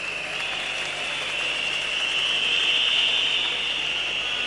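Large congregation applauding and cheering, swelling louder over the first three seconds.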